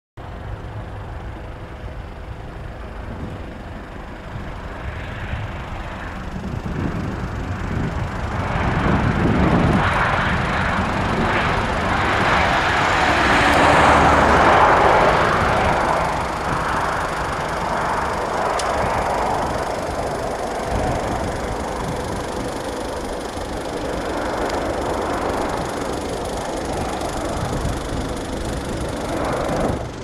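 Boeing 737's twin turbofan jet engines at taxi power as the airliner rolls past. The steady engine noise carries a faint whine and swells to its loudest about halfway through, then eases off.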